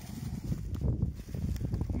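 Footsteps crunching irregularly through dry leaf litter, with wind rumbling on the microphone.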